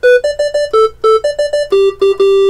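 A short jingle on an electronic keyboard: a quick run of single staccato notes, about five a second, in one melodic line that steps up and down between a few pitches.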